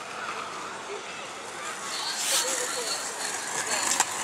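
Outdoor park background with faint distant voices, and a skateboard's wheels rolling on asphalt, a hiss that grows louder in the second half as it approaches.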